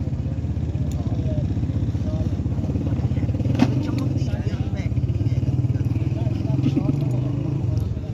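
A small engine running steadily with a fast, even pulse. There is a single sharp click about three and a half seconds in.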